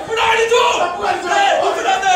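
Several voices raised together in a loud, continuous group shout, like a chant, with no break.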